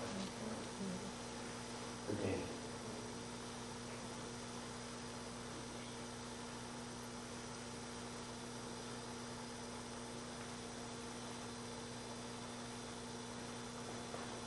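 Steady electrical mains hum over quiet room tone, with a brief faint sound about two seconds in.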